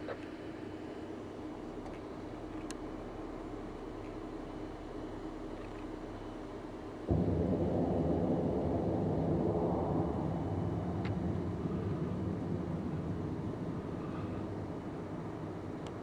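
Distant low rumble of a high-power rocket motor burning high overhead. It sets in abruptly about seven seconds in and slowly fades away.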